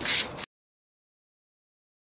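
The tail of a spoken word ending in a hiss, then complete digital silence for the rest: the sound track is muted.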